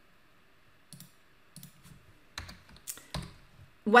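Computer keyboard and mouse clicks as a SUM formula is entered into a spreadsheet cell: about half a dozen separate clicks, starting about a second in.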